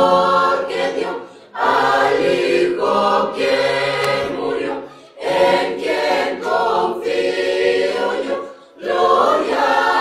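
Church choir of women's and men's voices singing a Spanish-language hymn together, in phrases with short breaks about one and a half, five and eight and a half seconds in.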